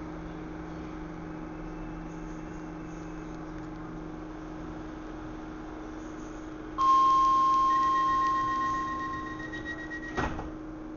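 Steady electrical hum of a Docklands Light Railway B07 Stock carriage standing at a platform with its doors open. About seven seconds in, the door-closing warning tone starts suddenly and loudly, then fades away over about three seconds as the doors are about to shut.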